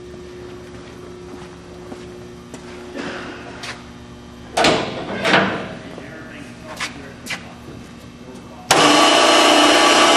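A few knocks and clunks, then near the end the Clark horizontal baler's 7.5-hp three-phase electric motor and hydraulic pump start abruptly and run steadily and loudly.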